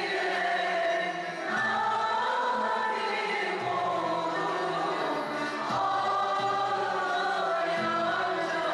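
Turkish classical music choir singing with violins accompanying, in the karcığar makam, the voices holding long notes that slide between pitches.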